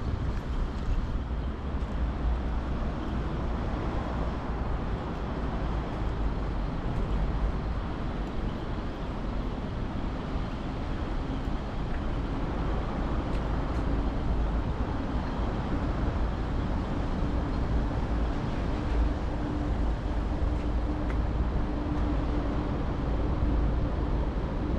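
Steady city road traffic noise with a constant low rumble, and an engine drone that becomes more noticeable from about halfway through.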